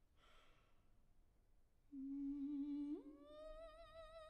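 Solo soprano voice: a faint breathy sound, then about two seconds in a steady low hummed note that a second later slides up to a higher, fuller sung note with vibrato.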